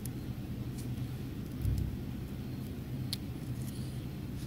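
Steady low background hum with a soft thump about one and a half seconds in and a few faint clicks near the end.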